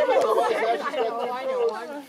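Several people talking over one another in casual chatter, with no clear words standing out.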